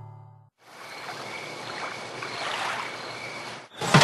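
Soft piano music fades out, then a steady hiss. Near the end comes one sharp metallic clack from an oven, as its door is opened and a metal baking tray is handled.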